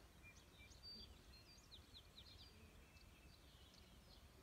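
Near silence: faint room tone with faint, brief bird chirps, including a quick run of short falling chirps about two seconds in.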